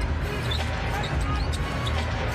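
Live basketball game sound in an arena: a steady crowd din, a ball being dribbled on the hardwood, and short sneaker squeaks on the court.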